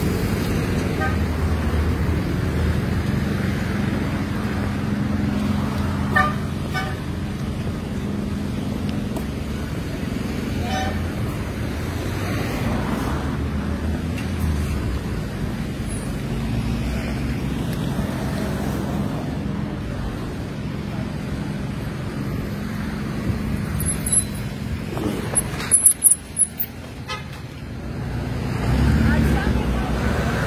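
Steady low rumble of car engines and road traffic along a queue of vehicles, with a few short car horn toots. A cluster of sharp knocks sounds about 25 seconds in, and the low rumble swells near the end.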